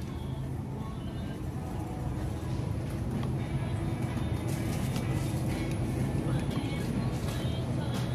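Grocery store ambience: a steady low hum, faint background music and voices, with a few light clicks of handling.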